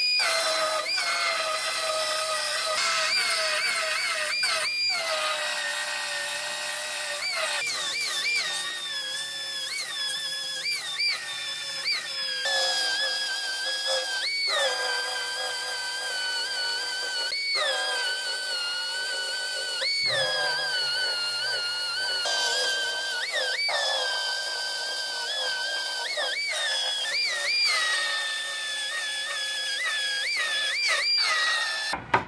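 Handheld air belt file (narrow belt sander) whining as it grinds through the sheet-metal seam to cut off a rear body panel. Its pitch drops under load and climbs back each time the belt is eased off, many times over, with short stops between passes.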